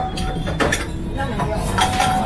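A person slurping ramen noodles: short noisy slurps about half a second in and again near the end, over background voices.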